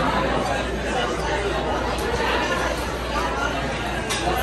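Many people chattering at once in a busy restaurant bar, a steady babble of overlapping voices that the recogniser caught no words from.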